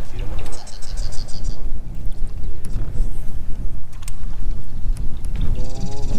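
Wind buffeting an action-camera microphone: a continuous low rumble that rises and falls in quick gusts, with faint voices and a few sharp clicks.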